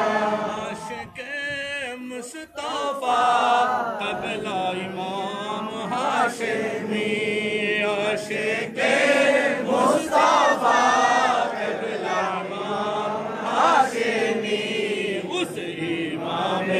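Men's voices chanting a milad-qiyam devotional salutation together, in long melodic sung phrases.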